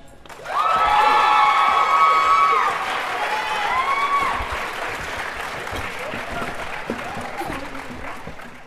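Audience applauding and cheering as the a cappella song ends. The applause swells about half a second in and then slowly dies away, with two long high-pitched whoops over it in the first few seconds.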